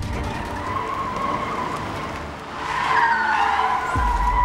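Car tyres squealing on asphalt under hard braking: a long screech that wavers in pitch, swells to its loudest about three seconds in and falls in pitch as the cars stop.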